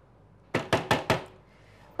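A hand knocking on a closed door: four quick raps in a row, starting about half a second in.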